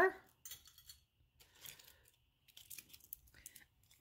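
Faint, scattered clicks and light rustling of costume jewelry being handled and set down on a wooden table.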